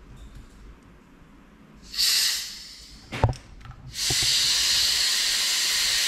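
Compressed air from a workshop compressor line, set to about 60 psi, hissing as the hose is held against an oil pressure sensor to pressure-test it. There is a short burst of hiss about two seconds in, a knock just after three seconds, then a longer steady hiss from about four seconds.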